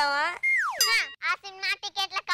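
A child's voice speaking, cut by a comic sound effect about half a second in: a whistle-like tone that holds briefly, then slides steeply down in pitch, with a bright jingling glide right after it.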